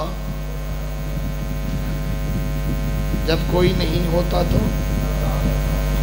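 Steady electrical mains hum carried on the microphone and sound system, with a man's voice breaking in briefly about three seconds in.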